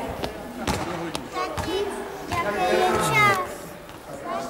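Young voices calling and shouting in a gymnasium, with a few sharp thuds of a basketball bouncing on the hall floor in the first second or so.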